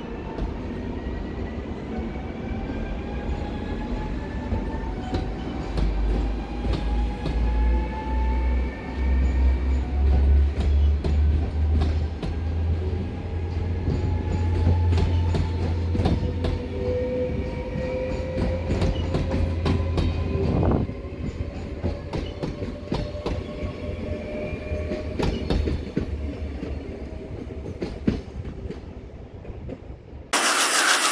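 NS double-deck electric multiple unit (VIRM) pulling out and passing: a whine from the electric drive that rises slowly in pitch as it gathers speed over the first twenty seconds, over a low rumble and wheels clicking over rail joints. The rumble drops away about twenty seconds in as the last carriages pass, leaving scattered clicks.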